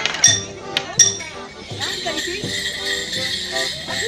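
A few sharp strikes with a ringing metallic edge in the first second, then a morris band starts up about two seconds in, playing a tune with a steady jingle of bells over it.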